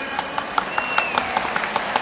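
Stadium crowd applauding, with sharp handclaps close by at about five a second. A brief high whistle-like tone sounds about half a second in, dipping slightly in pitch.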